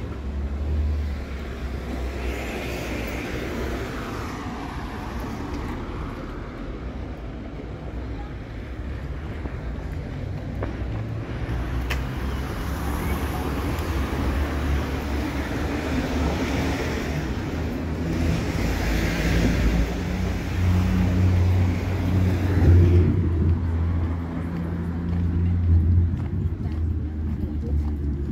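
Town street ambience: cars passing on the road, their sound swelling and fading twice, over a steady low rumble.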